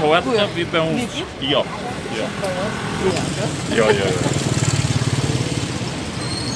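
Voices talking, then a small engine running with a fast, even pulse that is loudest a little past the middle.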